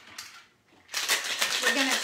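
Ice rattling inside a Boston shaker being shaken hard by hand: a fast, steady run of clicks that starts about a second in.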